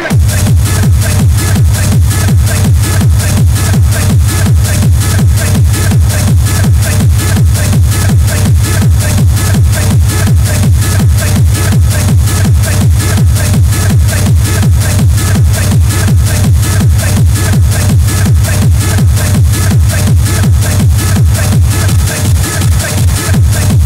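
Schranz hard techno from a DJ mix: a fast, steady four-on-the-floor kick drum with heavy bass and looping, distorted percussion. The full beat comes in right at the start.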